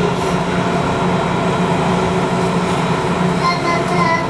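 Subway train running, heard from inside the car: a steady rumble with a low hum throughout.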